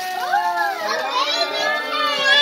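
Children's and adults' voices overlapping in excited, high-pitched chatter and exclamations.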